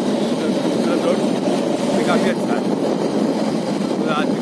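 Steady noise of riding a motorbike on a road: the bike's engine and wind over the microphone, with a few spoken words about two seconds in.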